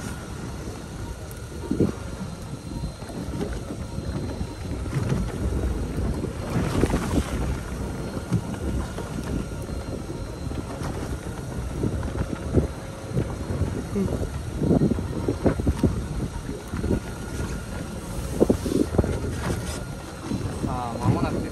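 Wind buffeting the microphone over the wash of water around a small boat, with a few scattered knocks and clicks.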